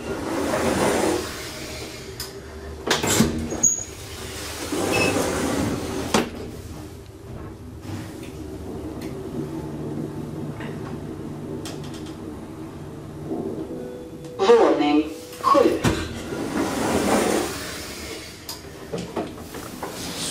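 Traction elevator heard from inside the cab: clunks and sliding rushes at first, then a steady low hum as the car travels. Near the end the doors slide open with further clunks.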